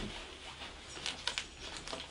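Light clicks from a Casio EX-F1 camera's buttons and handling, a few of them in the second half, over a low steady room hum.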